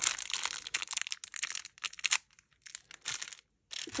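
Small clear plastic packets of beads crinkling as they are squeezed and handled, dense crackling for about two seconds, then a few scattered rustles that stop shortly before the end.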